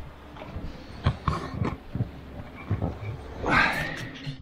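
Knocks and bumps of a handheld camera and of a man's body as he climbs down the companionway into a small sailboat's cabin, over a low rumble of wind on the microphone. A short sound that bends in pitch comes near the end.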